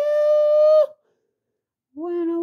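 A man's voice holding one long, high sung note that rises slightly in pitch and cuts off abruptly just under a second in, followed by about a second of dead silence; a new, lower sung note starts at the very end.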